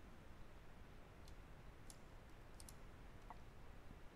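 Near silence with a few faint clicks of a computer mouse, the last two in quick succession.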